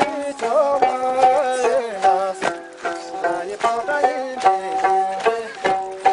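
Traditional Tibetan gorshay folk dance music: a held, lightly ornamented melody over a steady beat of sharp strikes, roughly two or three a second.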